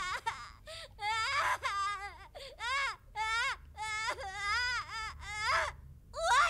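A high-pitched voice whimpering and crying in a run of short wavering wails, each rising and falling in pitch, with short gaps between them.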